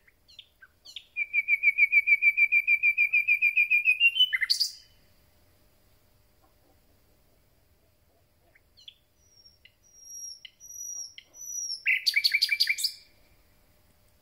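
Common nightingale singing two song phrases a few seconds apart. The first is a fast run of repeated notes, rising slightly in pitch and ending in a sharp note. The second starts with soft, high, whistled notes and builds to a loud rapid trill near the end.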